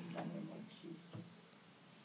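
A pause in a man's speech: his voice trails off, then near silence broken by a faint short click about one and a half seconds in.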